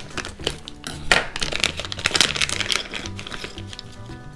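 Background music under the crinkling and crackling of a foil blind bag being cut open with scissors and handled, and tokens clicking together as they come out.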